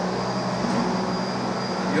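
Steady background noise: an even hiss with a low, constant hum.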